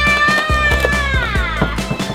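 A young girl's long, high-pitched yell, held steady and then sliding down in pitch near the end, over background music with a regular beat.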